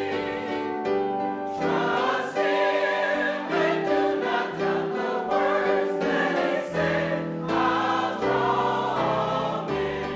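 Church choir singing in long held chords over a bass line.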